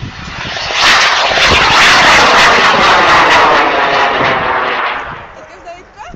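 A rocket motor firing at lift-off: a loud rushing noise that builds within the first second, holds for about three seconds and fades away as the rocket climbs out of earshot.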